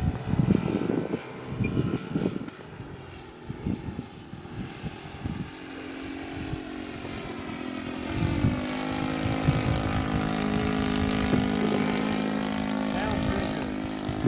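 Saito 100 single-cylinder four-stroke glow engine of a large radio-controlled J3 Cub flying overhead. It runs at a steady drone that comes in louder and holds from about eight seconds in as the plane passes.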